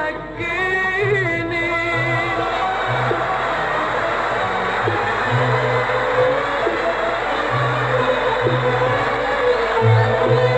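A female singer holds a long sung note with a wide vibrato over the orchestra, ending about two seconds in. The audience then breaks into sustained applause and cheering while the orchestra's low strings go on playing.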